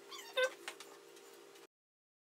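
A Welsh terrier gives one short, high whine about half a second in, over a faint steady hum. The sound cuts off abruptly to silence near the end.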